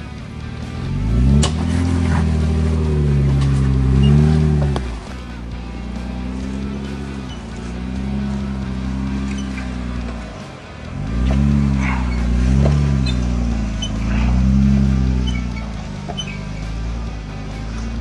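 Two-door Jeep Wrangler engine revving in long swells under throttle as it crawls over trail rocks, its pitch rising and falling, easing off twice, with a few sharp knocks of the tyres and underside on rock.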